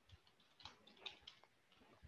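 Faint computer keyboard typing: a handful of soft key clicks as a short word is typed.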